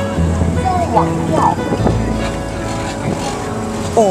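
A river boat's engine running with a steady low hum, heard on deck under passengers' voices and background music.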